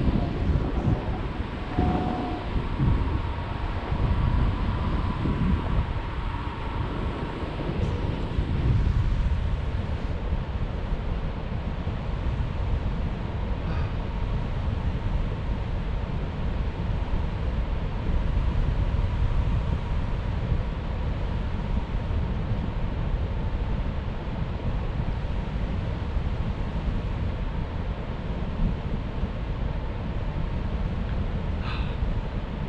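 Wind noise from the airflow of a tandem paraglider flight buffeting an action camera's microphone: a steady low rumble.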